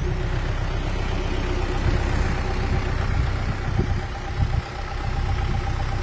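Tractor engine idling steadily, with a brief dip in loudness a little past the middle.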